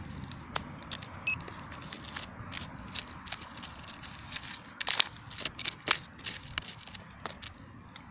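Plastic pinpointer probe poking and scraping through loose, stony soil in a dig hole: an irregular string of small clicks, scratches and crackles of grit and pebbles.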